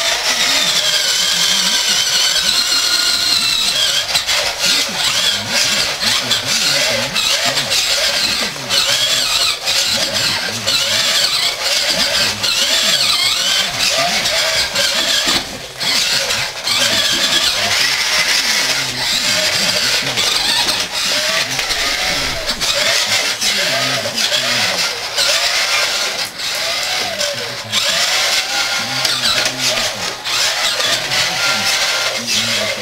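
Small electric motor and gearbox of a 1980s Tandy radio-controlled pickup truck whining as it drives, the pitch repeatedly rising and falling with the throttle. The sound dips briefly about halfway through.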